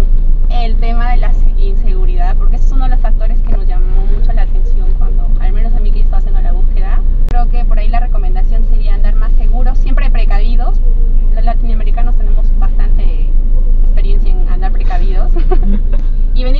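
Speech: a woman talking in Spanish, over the steady low rumble of the car they are sitting in.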